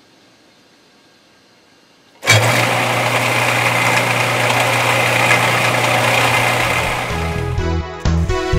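Metal lathe switched on about two seconds in, its motor and spindle then running steadily with a low hum under a loud hiss. Music comes in near the end.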